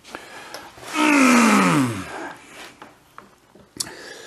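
A man's wordless voice, one drawn-out sound of effort about a second long that slides steadily down in pitch, while he turns a heavy manual transmission around on a workbench; a few faint knocks of the gearbox and cardboard being handled sit around it.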